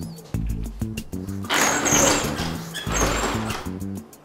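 Background music with a steady beat; from about a second and a half in, a louder noisy rattling rush lasting about two seconds, with thin high squeals, as the slats of a roller shutter run down.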